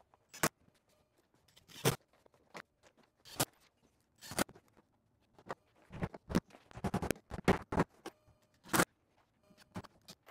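Irregular knocks and clunks from an acrylic bathtub being shifted and pressed into place against the wall studs. The knocks are single and spread out at first, then come thicker from about six seconds in.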